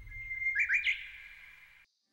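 Bird-like chirping: a held high whistle, then three quick rising chirps, fading and cut off suddenly shortly before the end.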